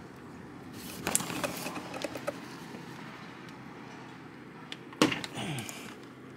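Small plastic clicks and rubbing as a replacement washer fluid level sensor is worked into its rubber grommet in the washer reservoir, about a second in. A sharp knock comes about five seconds in as the sensor is pushed home.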